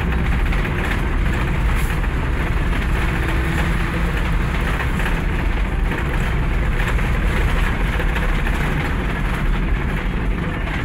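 Steady low rumble of a moving bus heard from inside the cabin: engine and road noise without a break.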